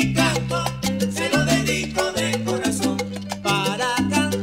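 Salsa music in an instrumental passage with no singing. A bass line moves in long held notes under sharp percussion strikes and a melodic lead line.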